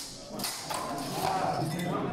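Rapier fencing in a large hall: footsteps tapping on the sports-hall floor and a light clink of steel blades, over background chatter.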